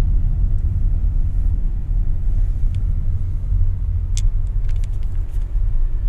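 Steady low rumble of a car heard from inside its cabin as it rolls slowly along, with a few faint clicks about two-thirds of the way through.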